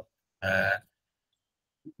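One brief vocal hesitation noise from a man's voice, about half a second long, a little after the start; the rest is dead silence, as from a noise-gated video call.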